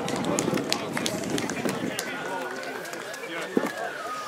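Outdoor football-match ambience: indistinct voices of players and spectators across the pitch, with scattered light clicks and a long, thin high tone from about halfway through.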